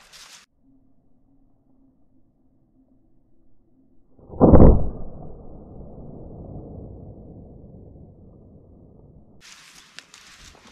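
Slowed-down report of a .30 caliber Hatsan Mod 130 QE break-barrel air rifle shot: a single deep boom about four seconds in, fading away slowly over several seconds.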